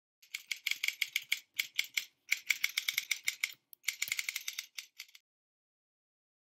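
Keyboard typing sound effect: rapid light key clicks, roughly seven a second, in three runs with short pauses between them, stopping about five seconds in.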